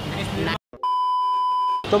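A man's speech cuts off into a brief silence, then a steady electronic beep, one high tone held for about a second, before the speech resumes.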